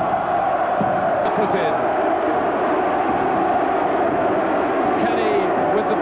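Rugby stadium crowd noise: a steady, loud din of many voices, with chanting in it.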